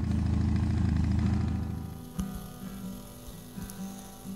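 A loud, low engine rumble that fades out about two seconds in, leaving quiet background music.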